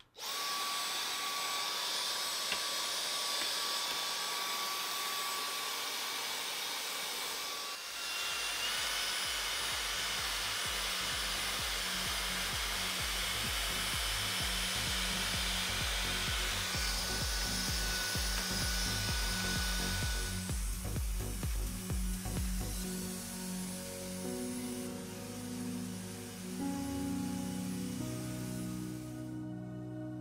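Dyson DC35 cordless handheld vacuum switched on and running steadily while sucking dust out of a PC case, with background music under it. Near the end the vacuum fades out and only the music remains.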